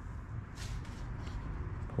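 Quiet low rumble of room noise with a few soft shuffling sounds.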